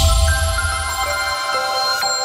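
News channel logo sting: an electronic musical jingle that opens with a deep bass hit, fading after about a second, under several steady chime tones held together and ringing on.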